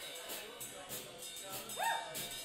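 A live band in a quiet passage: light, evenly spaced cymbal taps over soft instruments. Near the end comes one short, high yelp that rises sharply in pitch.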